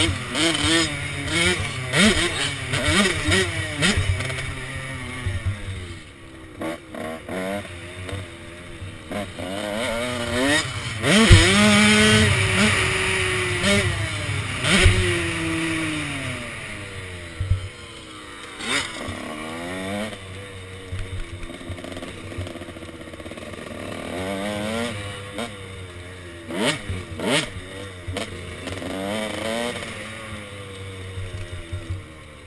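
KTM SX 105 two-stroke dirt bike engine heard from the rider's helmet, its pitch rising and falling over and over as the throttle opens and closes through the turns and gear changes. About eleven seconds in it pulls loudest and highest for several seconds on a straight before dropping back.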